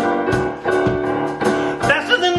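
Keyboard accompaniment for an up-tempo song, playing sustained chords with a steady beat of about two strokes a second.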